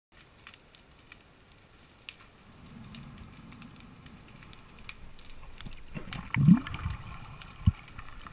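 Underwater sound: faint scattered clicks and crackles over a low rumble that grows louder, then a heavy knock with a short rising low tone about six and a half seconds in and a sharp thud near the end.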